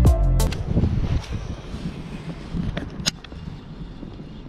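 Intro music ends within the first half second and gives way to low, steady wind noise on the microphone, with a sharp click about three seconds in.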